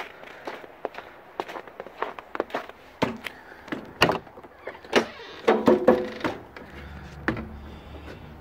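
A travel trailer's entry door being opened and climbed through, with a string of knocks and clicks from the door and from footsteps on its fold-out metal entry steps. The sharpest knocks come about three, four and five seconds in.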